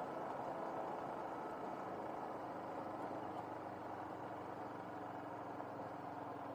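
Motorcycle engine running steadily at an even pace while riding along a dirt track, under a haze of road and wind noise.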